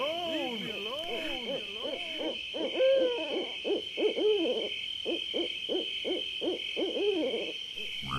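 A series of eerie hooting tones, each rising and then falling in pitch, about two a second and then shorter and quicker from about two and a half seconds in, over a steady high-pitched pulsing hum.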